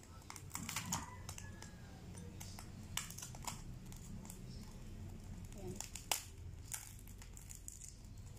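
Crunchy deep-fried pork skin of crispy pata crackling and breaking as a serrated knife cuts through it and fingers pull it apart: irregular sharp crunches, loudest about a second in and around six seconds.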